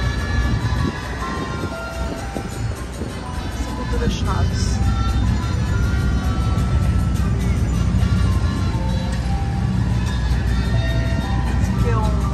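Ice cream truck jingle: a simple melody of short, steady notes playing over the low rumble of an engine.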